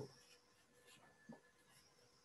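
Near silence: quiet room tone with a faint steady hum and one brief faint sound a little over a second in.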